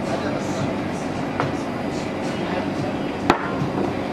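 Handling noise at a commercial espresso machine over a steady background hum: a light click about a second and a half in and a sharp clack a little after three seconds, as equipment such as the portafilter or cups is handled on the machine.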